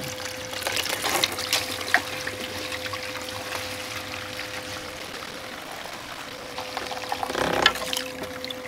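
Water pouring and splashing as a small plastic micro sluice is tipped up and its concentrates are rinsed off into a tub, with scattered small splashes and knocks and a steady hum underneath.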